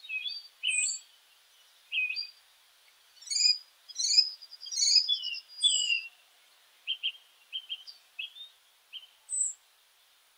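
Small birds calling in the trees: a string of short chirps, quick trills and high downslurred whistles from several birds, busiest around the middle.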